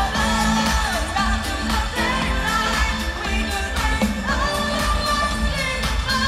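Live pop concert music heard from the crowd in a stadium: a sung vocal line over a synth-pop backing with a steady drum beat, played loud through the PA.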